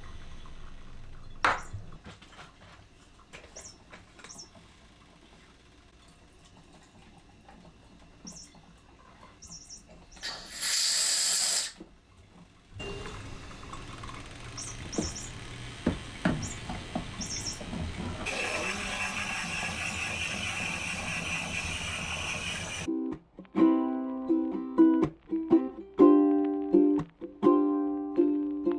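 Soft clinks of glass bottles and jars being handled, then a short loud hiss about ten seconds in. After that comes a steady machine sound from a De'Longhi combination coffee and espresso machine as it runs. Ukulele music comes in for the last few seconds.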